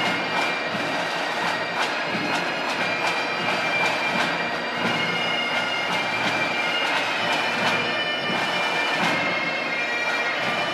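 Bagpipes playing a steady tune, their held drone tones sounding continuously under the melody.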